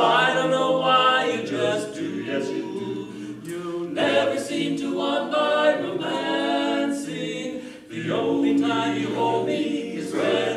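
Men's barbershop quartet singing a cappella in four-part close harmony (bass, baritone, lead and tenor), holding sustained chords through long phrases. There is a brief break for breath near the end before the next phrase begins.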